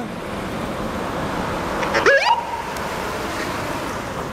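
Road traffic noise as a Magen David Adom intensive-care ambulance drives by; about halfway through, its siren gives one short rising whoop that levels off into a brief steady tone.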